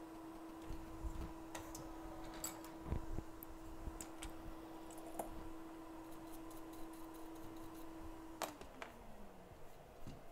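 A small electric motor, most likely a fan on the bench, hums steadily, then is switched off with a click near the end and winds down, its pitch falling. Light clicks and ticks of soldering tools working on the circuit board come and go throughout.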